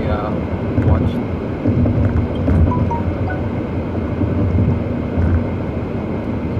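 Car being driven, heard from inside the cabin: a steady, loud rumble of road and engine noise.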